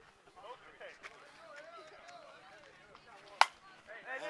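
A single sharp crack of a softball bat hitting a slowpitch softball, about three and a half seconds in, over faint voices in the background.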